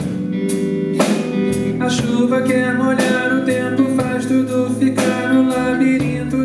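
Live band music: electric guitar over bass, keyboards and drums, with a sharp accent about once a second.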